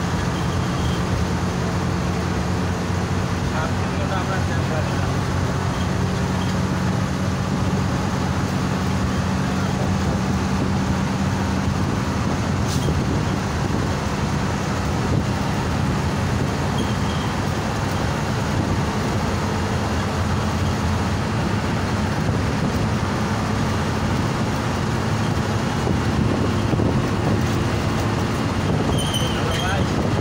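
Inside a moving long-distance coach: a steady engine drone mixed with tyre and road noise at cruising speed.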